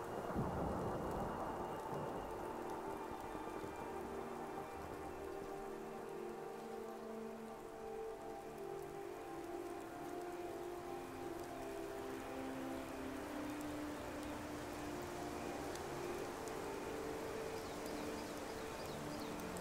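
Layered fantasy ambience: a steady rushing hiss under soft music with long, slowly changing held notes. A low rumble sounds in the first couple of seconds.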